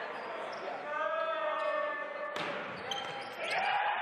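Volleyball struck on the serve: one sharp slap about two and a half seconds in, echoing in a large gym. A drawn-out call from a voice comes before it, and players' voices follow.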